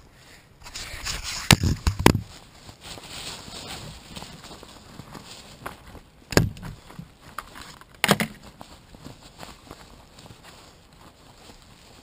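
Handling knocks as a camera is set down, the loudest two about a second and a half and two seconds in, then a few scattered knocks and faint rustling of someone moving about in dry leaf litter.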